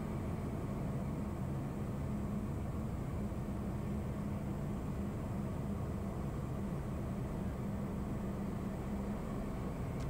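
Steady cabin drone of a Piper Meridian's turboprop engine and propeller in flight, a low even rumble with a steady hum under it.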